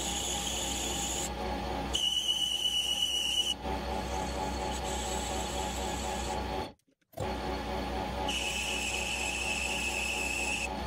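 Metal lathe running with a steady gear hum as its chuck spins a brass bar being turned into a crank bearing. A high-pitched whine comes in three times for a second or two each as the tool cuts the brass, and the sound drops out briefly about seven seconds in.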